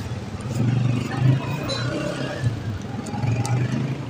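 Street noise: a low, uneven rumble of traffic with indistinct voices talking in the background.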